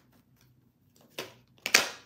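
A tarot card being pulled from the deck: quiet for about a second, then a short faint papery rustle and, near the end, a louder brief card snap.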